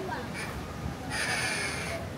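A single loud, raspy call, held for just under a second from about halfway in, over the chatter of a crowd.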